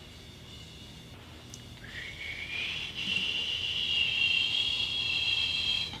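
Drum room-mic track played through the bx_refinement plugin's solo filter, so only the band the plugin cuts is heard: a high, thin, whistling hiss that comes in about two seconds in, slides up in pitch, then holds steady. These are the harsh "really gross whistles" being removed from the drum room channel.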